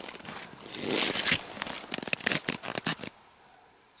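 Footsteps crunching in dry, bitterly cold snow, with crackly rustling, stopping about three seconds in.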